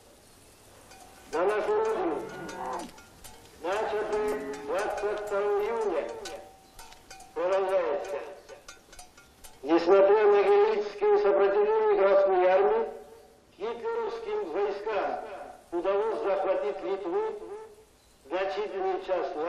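A high voice singing in held phrases a few seconds long, wavering in pitch, with short pauses between them, played over outdoor horn loudspeakers.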